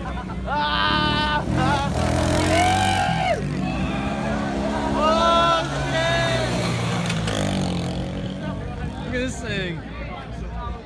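Small engines of a mini bike and a youth ATV running as they circle past, under loud yells and whoops that come about half a second in, around two and a half seconds in, and again around five to six seconds in.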